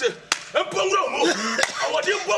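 A man's voice speaking, broken by two sharp slap-like smacks, one just after the start and one near the end.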